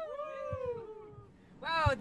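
A singer's voice holds a high final note after the band has stopped, gliding slowly down in pitch and fading away. Near the end another voice starts the next line.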